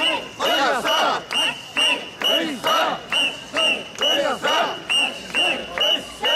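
Mikoshi bearers shouting a rhythmic "wasshoi" chant in unison, about two loud shouts a second, keeping step as they carry the portable shrine.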